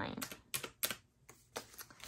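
Keys of a desk calculator with round, typewriter-style keycaps being pressed: about half a dozen separate clicks as a running total is entered.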